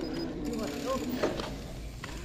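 Low, steady rumble of wind and tyres from a mountain bike rolling along a paved road, with faint voices in the background.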